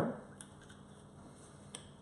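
Quiet kitchen room tone with a few faint clicks, then a single short knock near the end as a glass bottle is set down on the worktop.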